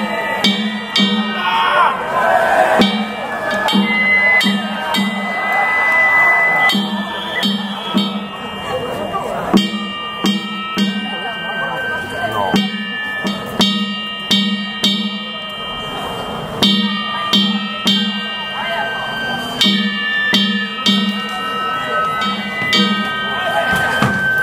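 Danjiri festival music: a drum beating steadily about twice a second, with sharp metallic gong strikes and high, long-held flute notes, over the voices of a crowd.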